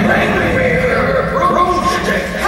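Stage actors' voices exclaiming without clear words, with a steady low rumble underneath.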